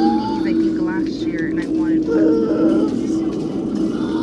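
Indistinct voices in a busy shop over steady background noise, with a constant low hum running underneath.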